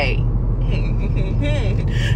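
Steady low rumble of a car heard from inside its cabin, with a faint voice murmuring partway through.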